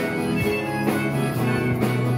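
Live rock band playing: guitars, bass and drum kit, sustained chords over regular drum strikes.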